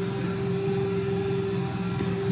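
A steady background hum with one constant mid-pitched tone and a few lower droning tones, unchanging throughout.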